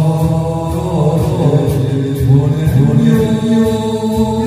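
A man singing a Korean trot song into a handheld microphone over a backing track. From about three seconds in he holds one long, steady note.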